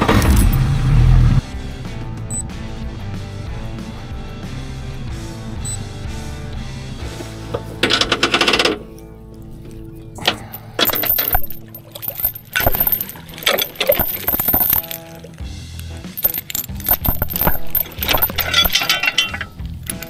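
Yamaha four-stroke outboard being key-started: a loud low rumble for about the first second, over background music. From about halfway, anchor chain clinking and rattling in quick irregular clicks as it is hauled up over the boat's bow.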